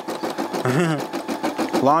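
Brother SE600 embroidery machine stitching a design: a rapid, even clatter of the needle, many stitches a second.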